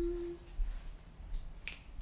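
A single sharp finger snap near the end, in a quiet room, after a brief hummed "mm" at the start.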